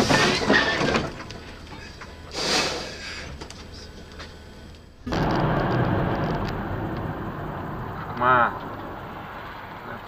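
Steady road and engine noise inside a moving car, picked up by a dashcam. A short wavering call-like sound comes in near the end. Before that, short loud noisy bursts fill the first few seconds.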